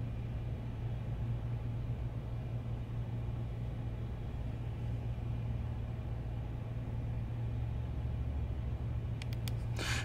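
Steady low hum with a faint hiss: background room tone, with no distinct sound from the device.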